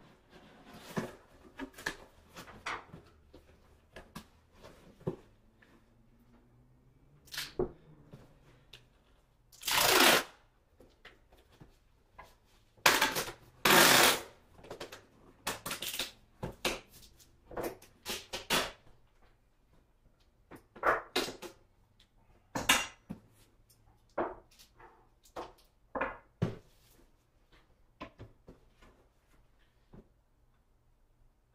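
Paper and book board being handled on workbenches: irregular rustling, sliding and light knocks, with the loudest rustles about ten seconds in and again around thirteen to fourteen seconds.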